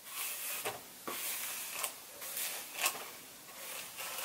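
Hairbrush strokes through long hair: soft repeated swishes, about one a second.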